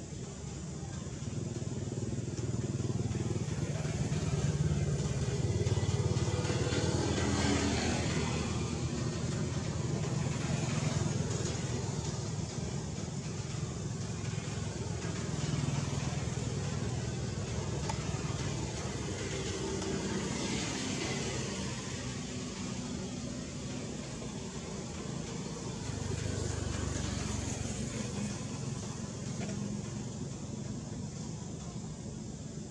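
Low engine rumble of motor vehicles passing, swelling louder a few seconds in and again near the end.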